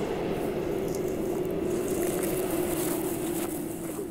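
Sci-fi sound effect of a time machine running: a steady electronic hum on one low tone under a rushing noise, the tone sinking slightly toward the end.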